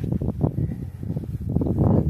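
Wind on the microphone: an uneven, low rumbling buffet with no speech.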